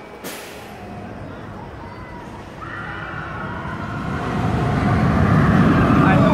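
Amusement ride in motion: a short hiss of air just after the start, then a low rumble that grows steadily louder through the last few seconds, with riders shrieking over it.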